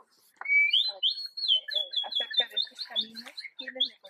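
A bird singing: a rising note about half a second in, then a long, high, fast-wavering warble that runs on for about three seconds.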